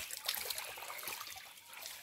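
Water trickling and splashing faintly in a shallow creek pool as a bather tips a bowl of water over her head; near the end the pour swells into a louder rush of water.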